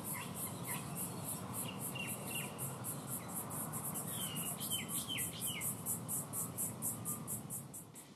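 Crickets chirping in a steady rhythm, about four pulses a second, with a few short falling bird calls around the middle, over a low even background hiss.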